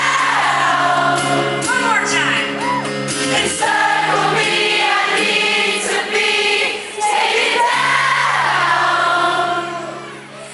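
Live pop-rock performance: female vocals over acoustic guitar and band, with a concert audience singing along loudly.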